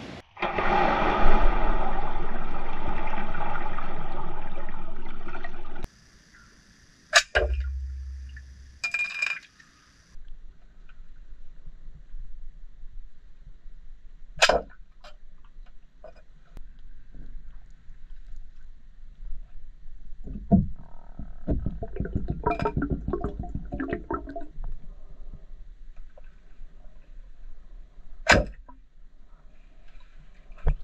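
Underwater in a swimming pool: a loud rush of water and bubbles for the first six seconds that cuts off abruptly, then quieter underwater noise broken by scattered sharp clicks and knocks.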